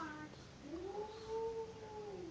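A single long, drawn-out animal call that rises a little and then holds its pitch for about a second and a half before falling away.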